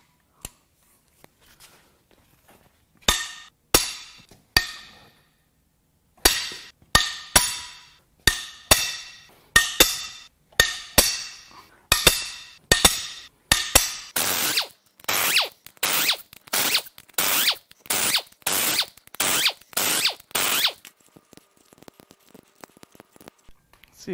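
Breaker bar and socket working the head bolts loose on a Cadillac Northstar V8 cylinder head: a series of sharp metallic cracks and clicks with a ringing tail. They start a few seconds in, grow busier, and settle into a regular clicking about twice a second before stopping near the end.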